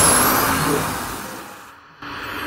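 The tail of a logo sting sound effect: a rushing noise that fades away over about two seconds, following a boom just before.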